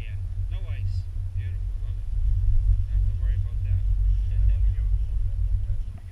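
Wind buffeting a camera microphone on an open chairlift: a steady low rumble that drops away near the end.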